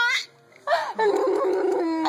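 Baby about four and a half months old laughing hard. A laugh breaks off just after the start, and after a short gap comes one long, drawn-out laugh held for over a second.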